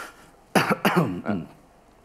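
A man's voice in three short, abrupt vocal bursts, falling in pitch, starting about half a second in; not clear words.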